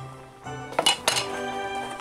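Kitchen utensils clinking against dishes: a few sharp clinks close together about a second in, over background music with sustained tones.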